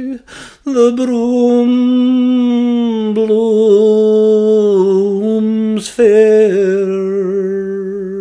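A man singing a Scots ballad unaccompanied, drawing out long held notes with a slight waver in pitch. He takes quick breaths about half a second in and again near six seconds in.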